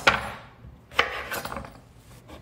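Chef's knife chopping the ends off a delicata squash, the blade cutting through and knocking onto a wooden cutting board: two sharp knocks about a second apart.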